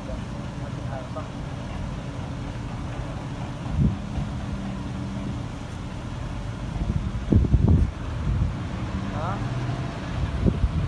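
Low, steady hum of a car engine as a sedan reverses slowly, with wind rumbling on the microphone. There are short louder bursts about four seconds in and again around seven to eight seconds in, and faint voices in the background.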